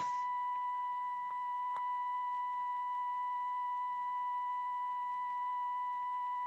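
A steady, unbroken high-pitched electronic tone, a single held beep with faint overtones, and one faint click near two seconds in.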